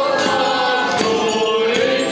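A group of carolers singing a Polish Christmas carol together, with sustained, gliding notes.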